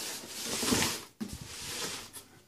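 A cardboard box being handled and slid over loose papers on a countertop: a rustling scrape lasting about half a second, then a few light knocks and rubs as it is set down.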